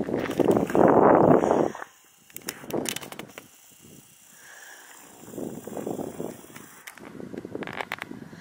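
Rustling and handling noise on a hand-held camera's microphone, loud for the first second and a half as the camera is swung about, then fainter with a few small knocks and scuffs.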